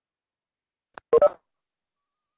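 A faint click about a second in, followed by a short two-part electronic tone lasting about a quarter of a second.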